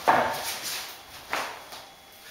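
Witex laminate planks being fitted together by hand: a sharp knock and scrape as a board's click-lock joint is pushed home, then a second, shorter one a little over a second later.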